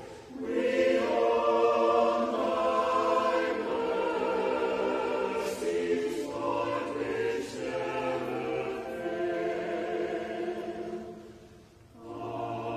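Church choir singing sustained, slow-moving chords, with a brief break just after the start and a fade into a pause shortly before the end.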